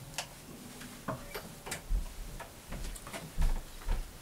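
Scattered light clicks and knocks with a few low thumps: an acoustic guitar being set down and a person moving up close to the camera, with handling noise.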